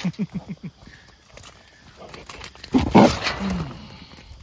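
Trapped boar hog grunting: a quick run of about five short grunts, then a louder, harsher grunting outburst about three seconds in as it comes up against the trap's wire panel.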